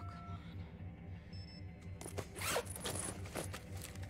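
The zipper of a canvas duffel bag pulled open in a series of quick rasps about halfway in, over a low, evenly pulsing music drone.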